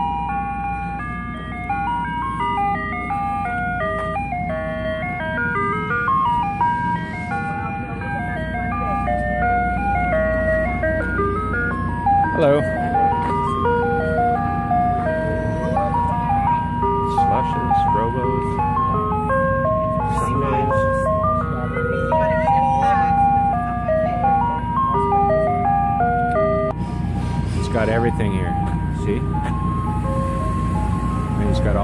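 Ice cream truck chime playing a simple tinkling tune, note by note, over a steady low hum.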